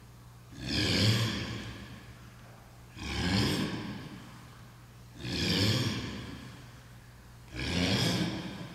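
A person's forceful voiced exhalations, four in all, about every two and a half seconds, each starting sharply and fading over about a second: breath pushed out with each upward dumbbell punch of a seated twisting ab exercise.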